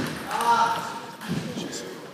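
Table tennis ball struck as a rally ends, a sharp hit right at the start, followed by a short high-pitched sound lasting about a second and a softer knock of the ball about a second and a half in.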